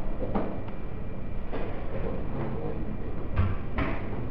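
A few light clicks and taps as the contact probe (jockey) of a slide-wire Wheatstone bridge is touched and moved along the resistance wire to hunt for the galvanometer's null point, over a steady low room hum.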